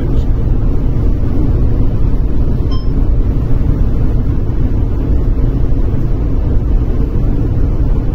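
Steady low road and engine noise inside a car's cabin at highway speed, with one short faint click about three seconds in.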